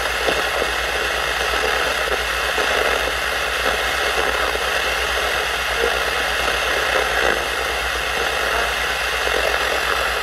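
Steady static hiss from a portable shortwave radio's speaker while it is tuned across the shortwave band with no station coming in, over a faint low buzz.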